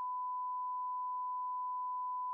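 A steady, pure electronic beep tone: a censor bleep laid over a spoken line, blanking it out mid-sentence.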